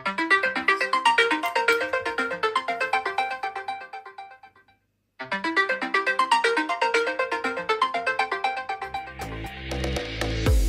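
WhatsApp incoming-call ringtone playing from a Samsung Galaxy phone's speaker: a melody of short plucked notes that stops for about half a second midway, then starts over. About a second before the end, electronic dance music with a heavy bass beat comes in.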